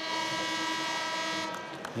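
Arena scoreboard horn sounding the end of a wrestling period: one long, steady, held tone that cuts off about one and a half seconds in.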